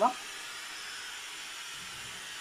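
A steady, even hiss with no distinct events, just after the end of a spoken word.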